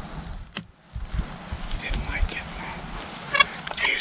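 Outdoor field ambience: a low rumble of wind on the microphone with birds chirping, a single sharp click about half a second in, and a short pitched rasp near the end.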